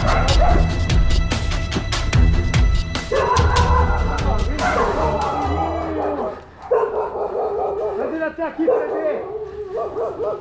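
Background music with a steady beat, which stops about halfway through. A dog barks and yelps repeatedly, in short high calls, mostly in the second half.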